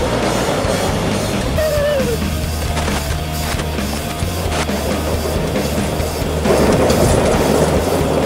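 Electric go-kart tyres spinning and crunching over loose gravel, starting suddenly at the launch and growing louder near the end as the kart slides sideways, with rock music playing over it.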